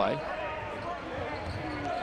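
Basketball arena sound: a murmuring crowd and a ball bouncing on the hardwood court.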